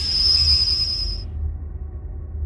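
Electronic logo intro music: a deep pulsing bass rumble under a high ringing tone that cuts off a little over a second in.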